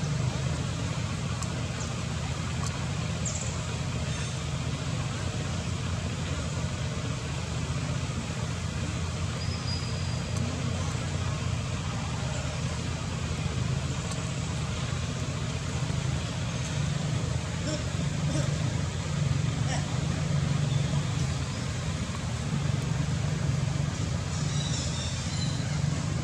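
Steady outdoor background noise: a low rumble with an even hiss over it, and a few faint short sounds.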